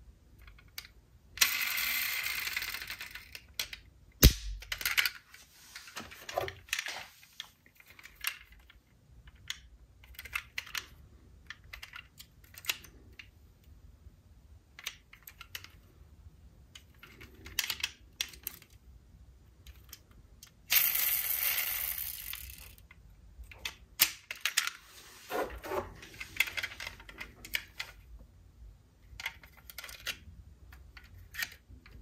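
Diecast metal toy cars being handled: many small clicks and taps as doors are swung open and shut and the models are turned in the hands, with a sharp knock about four seconds in. Two longer noisy stretches, about two seconds in and about twenty-one seconds in, stand out as the loudest sounds.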